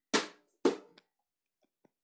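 Two sharp knocks on a hard surface, about half a second apart, each dying away quickly.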